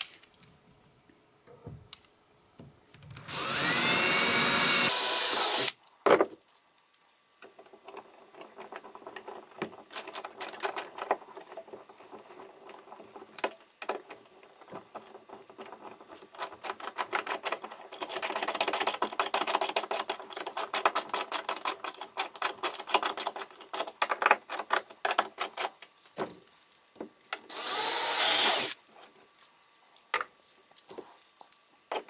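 Cordless drill running in two short bursts, a few seconds in and again near the end, its motor pitch rising as it spins up while drilling into the kayak's plastic hull. Between the bursts a hand screwdriver turns the mounting screws in, a long run of rapid clicks.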